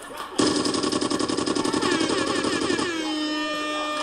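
A loud sound effect: a rapid rattling burst lasting about two and a half seconds that starts and stops abruptly, then gives way to a steady pitched tone.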